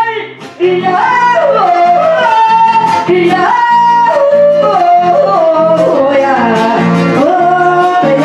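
A woman singing a melody of falling, drawn-out phrases, with an acoustic guitar strumming a steady rhythm beneath. A brief gap in the voice comes just after the start, then the singing resumes.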